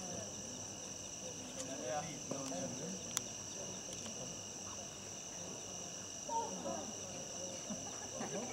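Crickets chirring in a steady, high-pitched night chorus, with soft laughter and low voices over it and a single sharp click about three seconds in.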